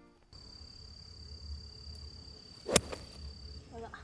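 A golf club striking the ball: one sharp crack about three-quarters of the way through, with a steady high tone and low outdoor rumble in the background. The shot is then called slightly skied, hit a little 'tempura' off the top of the clubface.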